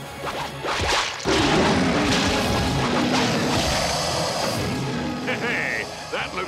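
Cartoon fight sound effects: a sharp hit about a second in, then a long, loud crashing rumble, all over a dramatic orchestral score.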